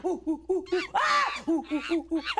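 A person imitating an orangutan's calls: a quick run of short hooting sounds, with a higher call about a second in.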